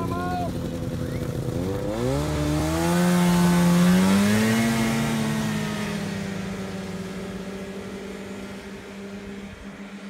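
Snowmobile engine accelerating past: its pitch climbs about two seconds in and it is loudest around four seconds. It then holds a steady note and fades as the machine drives away.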